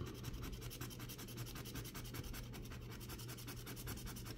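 A dog tag scraping the latex coating off a scratch-off lottery ticket in rapid, regular back-and-forth strokes. The sound is soft and steady.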